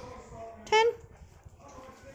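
Speech: a high voice calls a pet's name once, short and rising in pitch, about two-thirds of a second in, over quieter talk.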